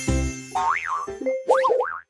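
Bouncy children's background music that drops away about half a second in. Cartoon sound effects follow: quick springy pitch glides that swoop up and down, the busiest near the end, before the sound cuts off.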